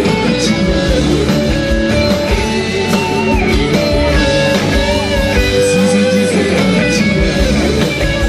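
Live sertanejo band playing, with acoustic and electric guitars and accordion over percussion.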